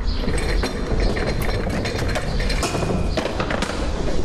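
A run of irregular light clicks and knocks over a steady low hum.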